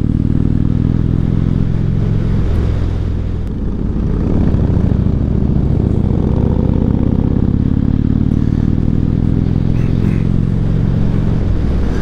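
Harley-Davidson Road King's V-twin engine running under way, heard from the rider's seat. It eases off briefly about four seconds in, then pulls again with a slowly rising pitch.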